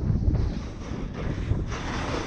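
Wind buffeting the microphone of a body-worn camera during a fast descent on a ski slope, with the hiss of edges scraping packed snow that swells near the end.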